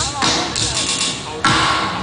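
A live band playing loud music with drums and cymbals, with a voice shouting or singing over it near the start.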